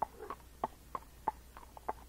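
Tennessee Walking Horse's hooves striking a paved road at a walk: an even clip-clop of about three hoofbeats a second.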